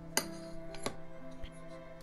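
Quiet background music, with two light clicks about two-thirds of a second apart as the opened USB-C NVMe SSD enclosure and its cover are handled.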